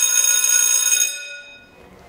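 A school bell ringing steadily, stopping about a second in and ringing out to quiet.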